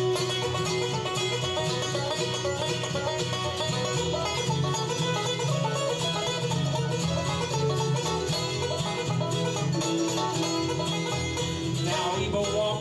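Live bluegrass band playing an instrumental break with no singing: banjo, mandolin and acoustic guitar picking quick notes over a steady upright bass line.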